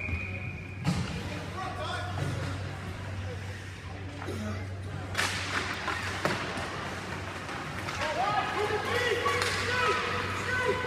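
Ice hockey play in an indoor rink: a few sharp knocks of sticks and puck, with distant shouting voices over a steady low hum.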